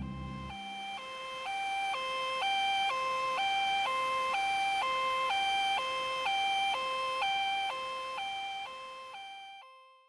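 Two-tone hi-lo emergency siren, switching between a lower and a higher pitch about twice a second; it swells in, holds steady, then fades and cuts off near the end.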